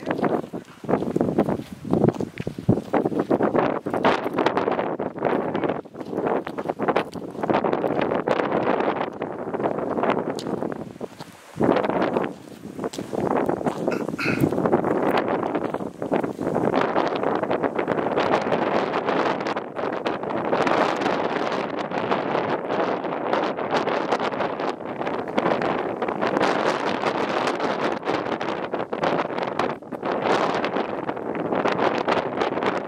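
Wind buffeting the camera microphone in uneven gusts.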